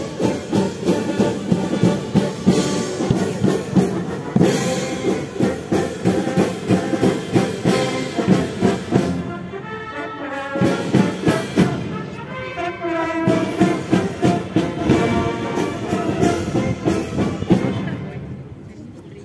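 Military brass band playing a march, brass over a steady drum beat, breaking off at the end.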